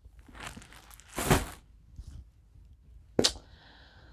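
Clear plastic bag holding skeins of yarn rustling and crinkling as it is handled and set aside, with a short sharp knock a little after three seconds in.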